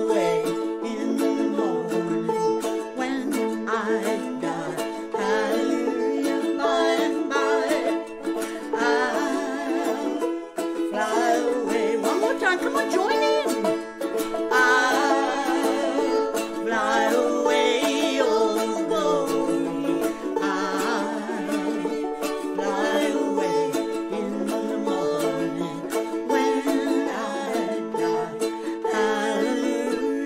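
Live acoustic song: two women singing together, accompanied by a picked five-string banjo and a small strummed string instrument.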